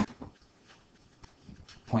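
Faint, scattered light taps and ticks of a pen stylus on a writing surface as numbers are handwritten, a few per second, irregular.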